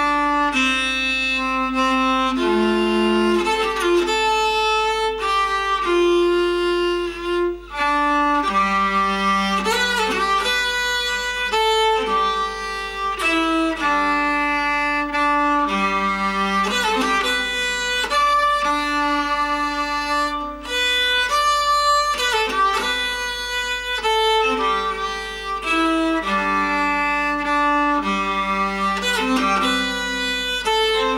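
Handbuilt nyckelharpa (Swedish keyed fiddle) being bowed, playing a tune in sustained, changing notes with a short break about seven and a half seconds in.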